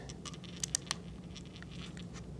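Faint handling clicks and scratches, with two sharper ticks a little after half a second in, as fingers work open the small port door on the side of a Canon EOS M50 camera.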